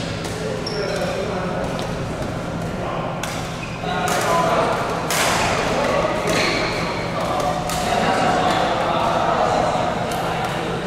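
Badminton rally on an indoor court: a few sharp racket hits on the shuttlecock, about two seconds apart in the second half, with players' footfalls and a steady low hum in the hall.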